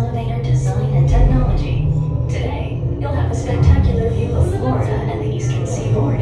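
Voices, a woman's among them, over the ride's soundtrack of music and a steady low rumble as the simulated space elevator climbs.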